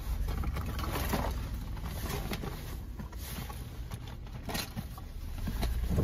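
Hands rummaging through a canvas tote bag, its contents rustling with scattered small knocks, over the steady low rumble of a car idling.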